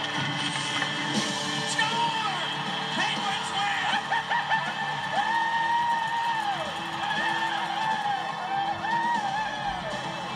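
Music playing, with long held vocal notes that bend up and down at their ends.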